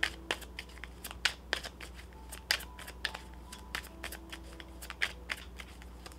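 A deck of tarot cards being shuffled by hand: an irregular run of crisp snaps and taps as the cards slide and strike together.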